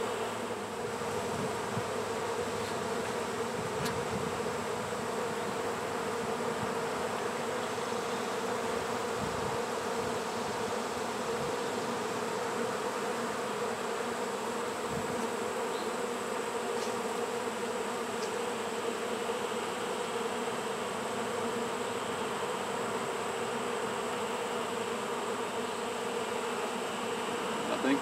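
Steady buzzing hum of a mass of honeybees in the air around a newly hived colony, the bees orienting to their new hive and finding their way in.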